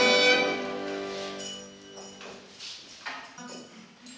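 The final held chord of a folk carol, played on accordion and fiddle, rings on and then fades out over about the first second and a half. Faint, scattered room sounds follow.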